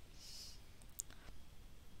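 A faint short hiss near the start, then one sharp click about a second in, over quiet room tone.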